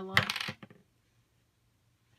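A short, sharp clack of a few quick taps, as card stock is set down and pressed onto the tabletop, followed by near silence.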